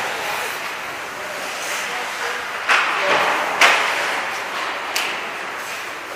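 Ice hockey practice sound in an indoor arena: steady scraping of skate blades on the ice, with sharp clacks of sticks and pucks about two and a half, three and a half and five seconds in.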